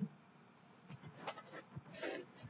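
A few faint clicks from a computer keyboard and mouse over quiet room tone.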